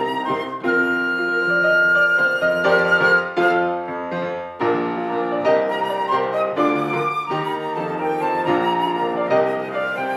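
A flute and a grand piano playing a classical duo. The flute holds one long high note over the piano in the first few seconds, and after a short break about four and a half seconds in, both carry on in quicker moving notes.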